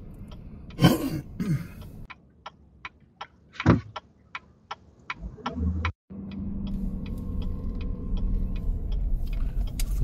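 A car's turn-signal indicator ticking steadily, about three ticks a second, heard inside the cabin, with two short louder sounds about one and nearly four seconds in. After a brief break near six seconds the car's engine and road hum run steadily under the ticking.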